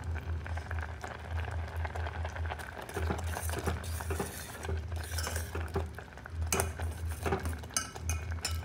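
Steel ladle stirring and scraping through thick simmering rice kheer in a steel pot, with small clinks of metal on metal against the pot's side, over a low hum.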